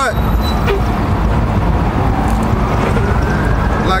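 Street traffic with a steady low rumble, and a passing vehicle whose faint whine rises in pitch over the second half.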